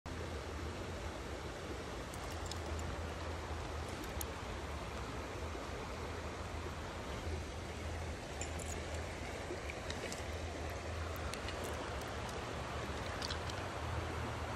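Steady rush of flowing stream water, with a few faint clicks scattered through it.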